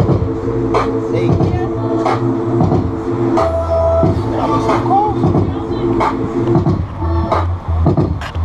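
Hip-hop instrumental beat playing from a portable boombox: drum hits over sustained synth chords and a bass line.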